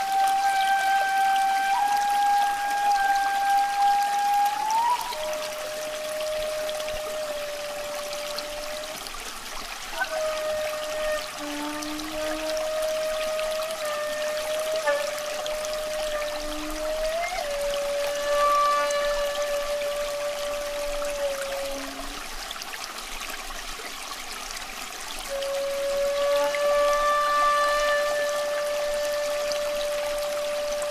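Slow meditation music: a single flute-like melody of long held notes, joined by small pitch slides, over a steady trickle of running water. The melody pauses for a few seconds near the end, leaving only the water, then comes back on one long note.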